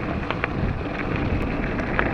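Wind buffeting the microphone and a mountain bike rolling over a gravelly dirt singletrack, a steady rushing noise with a few sharp ticks of rattle.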